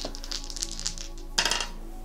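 A few small clear crystal dice rattled in the hand and cast onto the cards, with a light clicking rattle and then a brief clatter as they land and settle, over soft background music.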